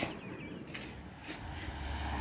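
Quiet outdoor ambience with a few faint bird calls in the first half, and a low rumble that sets in about a second and a half in.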